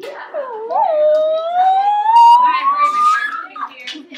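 A girl's long, drawn-out vocal cry, wavering briefly and then rising steadily in pitch for about two and a half seconds before breaking off.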